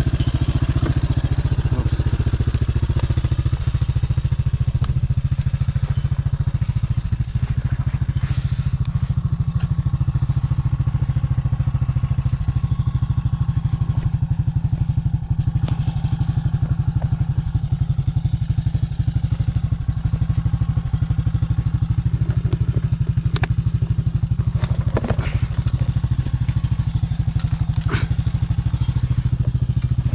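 ATV engine idling steadily, with a few scattered knocks and clatters from handling gear.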